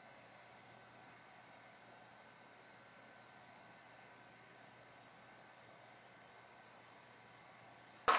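Near silence: faint, steady room tone with a slight hiss.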